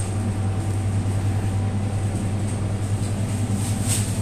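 Steady low machine hum with a faint high whine above it.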